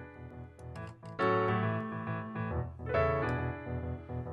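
Software piano instrument playing rhythmic blues chords from a 12-bar blues in E, with the rhythm pattern generated by software. A louder chord comes in just over a second in and another near the end.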